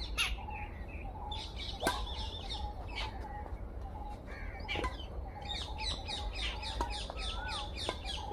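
Birds chirping in the surrounding trees, with a fast run of short chirps in the second half. A few sharp clicks, the loudest about two seconds in, are badminton rackets striking the shuttlecock during a rally.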